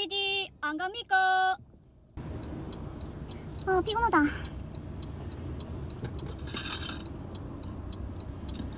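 Car cabin noise: a low, steady road rumble with a turn-signal indicator ticking about three times a second. The rumble comes in about two seconds in, after a short high-pitched voice with held notes. A brief weary voiced sound follows about four seconds in.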